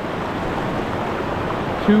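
A fast, shallow mountain stream rushing over boulders and riffles, giving a steady wash of water noise. A man's voice starts right at the end.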